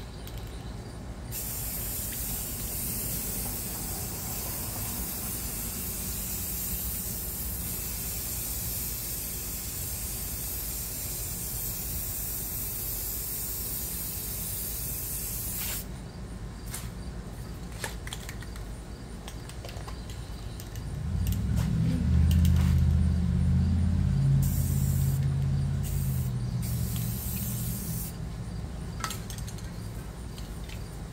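Aerosol spray paint cans hissing as paint is sprayed onto the surface of a tub of water for hydro dipping. There is one steady spray from about a second in until about halfway, then a run of short bursts. A louder low rumble comes in for several seconds about three-quarters of the way through.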